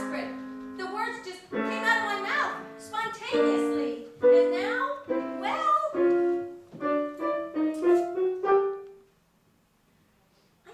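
A woman singing a show tune with piano accompaniment, ending on a held note; the music stops about nine seconds in, leaving a moment of near silence.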